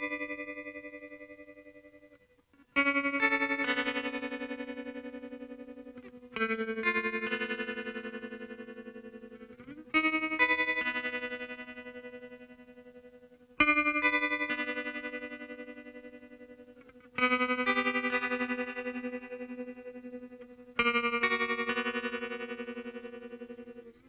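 Slow guitar music: a chord struck about every three and a half seconds, each left to ring out and fade slowly before the next.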